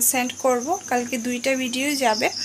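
A cricket chirping steadily in a fast, even pulse, behind a woman talking.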